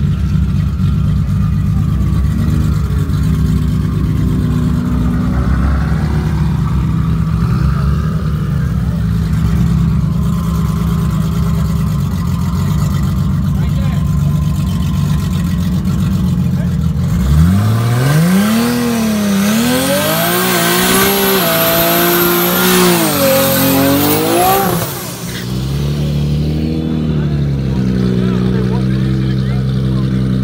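Race car engines idling at the start line. About seventeen seconds in, one engine is revved hard several times, its pitch rising and falling with a high whine over it for about eight seconds, before it drops back to a steady idle.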